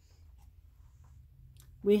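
Very quiet room with a faint low hum and a faint papery rustle of a tarot card being drawn and handled, then a woman's voice begins near the end.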